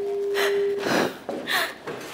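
A few short, breathy gasps, with a steady held tone under the first second.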